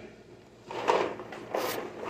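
Cardboard box of Barilla rotini being handled and moved: a short scraping rustle about a second in and another near the end.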